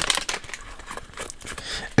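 Light crinkling and rustling of a torn-open foil hockey card pack and the stack of cards being handled, made up of many small irregular clicks.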